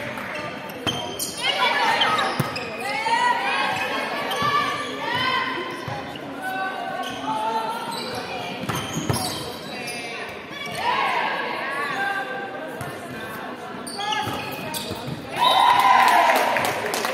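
Volleyball rally in a large sports hall: the ball is struck and feet hit the wooden court in sharp knocks, while women players call out in short shouts. The loudest moment comes near the end.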